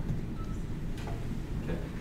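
Steady low room rumble with a couple of faint clicks about a second in and near the end.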